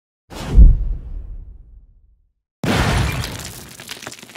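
Intro sound effects: a sudden deep boom that dies away, then after a short silence a crash of breaking glass trailing off in scattered clinks.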